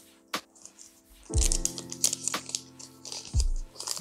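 Background music starts about a second in: sustained chords with a deep beat about every two seconds. Under it comes faint crinkling of a foil booster pack being handled, with a single sharp click near the start.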